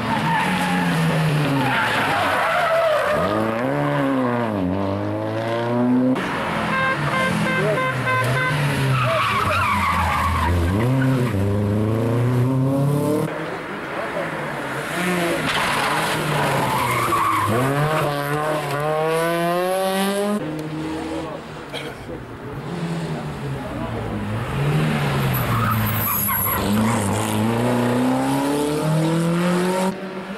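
Rally cars' engines revving hard up through the gears as they come up the stage, the pitch climbing and then dropping at each shift, over and over as car follows car.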